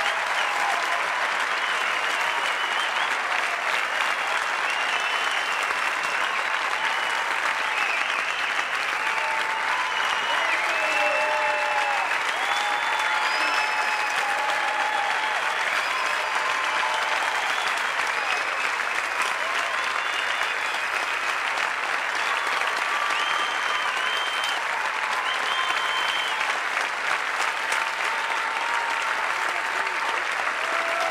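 Sustained applause from a large theatre audience, dense and steady, with scattered voices calling out over it.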